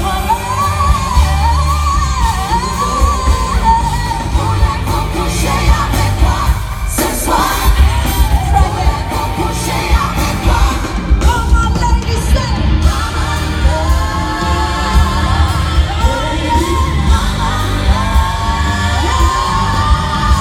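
Live pop concert in an arena, heard from the audience: a woman singing over a loud band track with a heavy, steady bass beat, the sound filling a large hall.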